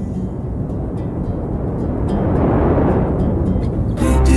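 A rushing noise with no clear pitch that swells to a peak about two and a half seconds in and then eases, with faint short high ticks above it.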